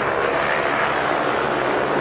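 Several speedway motorcycles' 500cc single-cylinder engines running flat out through a bend, heard as one steady engine noise without a break.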